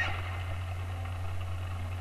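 A steady low hum with faint, indistinct background sound above it.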